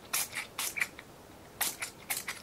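Short, soft rustles of a paper cleaning patch being handled and folded onto a gun-cleaning rod, several in the first second and a couple more near the end.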